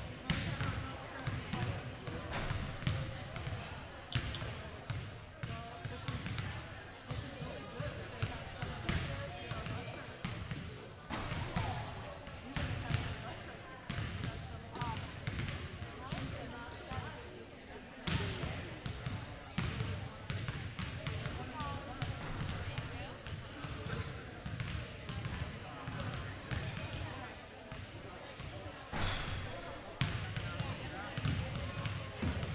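Several basketballs bouncing irregularly on a hardwood gym floor, many overlapping thuds, over indistinct voices of people talking in the gym.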